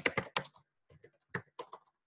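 Typing on a computer keyboard: a quick run of keystrokes, then a few spaced ones, stopping shortly before the end.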